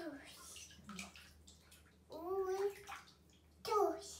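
A toddler in a bathtub making two short vocal sounds, the second briefly louder, over faint bathwater sloshing.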